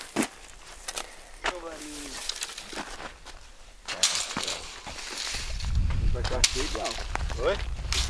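A long wooden threshing stick of espeteiro roxo being handled and swung over dry bean plants, giving scattered knocks and crackles and a swish about four seconds in. A low rumble runs through the second half.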